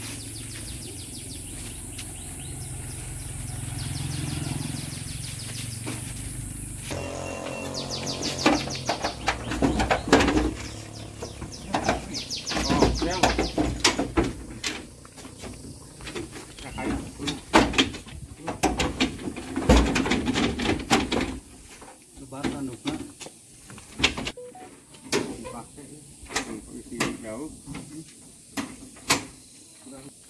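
Knocks and clatter of sheep being lifted and shifted onto the slatted wooden bed of a caged pickup truck, many sharp knocks in irregular runs, with people talking low.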